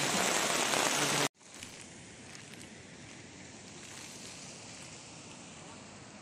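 Heavy rain falling, a dense steady hiss that cuts off abruptly about a second in; after it only a faint steady hiss remains.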